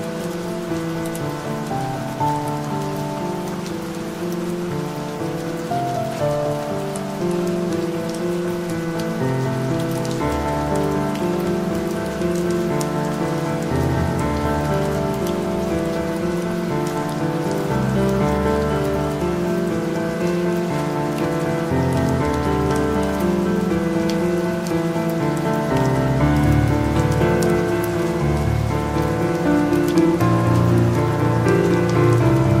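Calm piano music played over a steady rain ambience; deeper bass piano notes join about ten seconds in.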